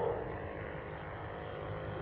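Steady low hum and hiss of an old speech recording's background, with no distinct event.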